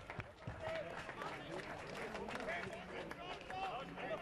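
Several indistinct voices calling and chatting across an open football ground, with scattered short knocks among them.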